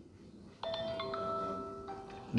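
A mobile phone ringing with an electronic ringtone: a few held chime notes that step in pitch, starting about half a second in.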